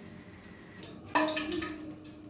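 Quiet, then about a second in a metal wok is set down on a gas stove's pan grate: a sudden knock that rings and fades.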